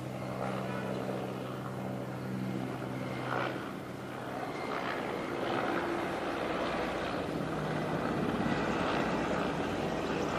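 Mi-8/Mi-17-family military transport helicopter flying overhead, its rotor and turbine noise growing louder as it comes closer, with a low pulsing rotor beat in the second half.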